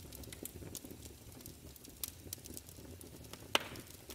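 Wood fire crackling: scattered small pops and snaps over a low rumble, with one louder pop about three and a half seconds in.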